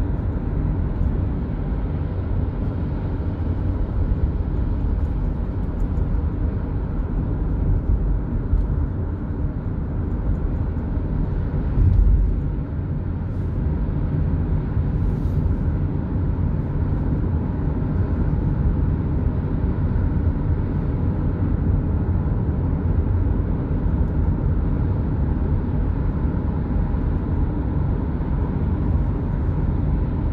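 Steady low rumble of a car driving at speed on an expressway: tyre and road noise with engine hum. A brief louder thump comes about twelve seconds in.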